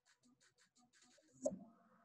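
Faint rapid ticking or scratching, about six to eight ticks a second, with one louder click about one and a half seconds in, followed by a faint steady hum.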